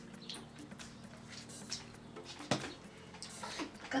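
Faint small clicks and rustles of wooden chopsticks handling gummy candy on a tray, with one sharper click about two and a half seconds in, over a faint steady low hum.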